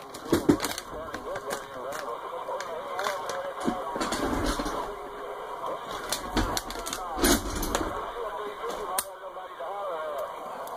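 CB radio receiving distant skip stations on channel 28 AM: several garbled, warbling voices talking over one another, too broken to make out, with frequent sharp static crashes and clicks.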